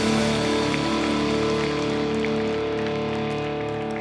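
Live band holding one sustained chord on guitars and keyboard, with no singing, slowly fading as a song ends.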